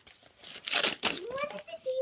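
Tissue paper crinkling and tearing as it is pulled off a wrapped present, loudest in one burst about half a second in. Near the end a child's voice starts up with a rising pitch.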